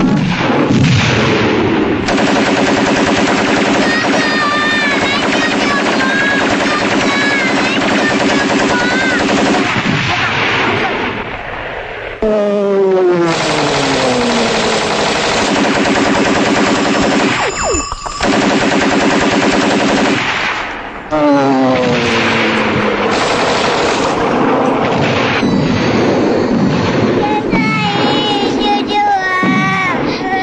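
Battle sound effects: dense, continuous machine-gun and rifle fire, with falling whistles twice, after the sound drops briefly near the middle and again about three-quarters of the way through.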